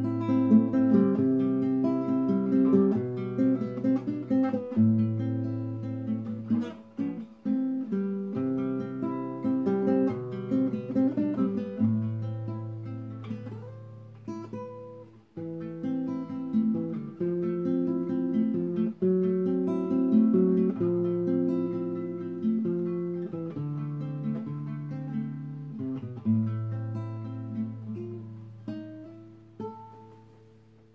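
Nylon-string classical guitar played with the fingers: picked chords that change every second or two and ring on, the playing fading out near the end.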